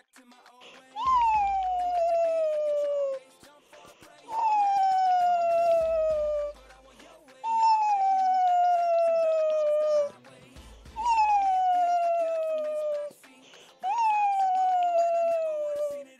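Five long whistle-like tones, each sliding down in pitch over about two seconds and repeating about every three seconds: a dubbed-in comedy sound effect.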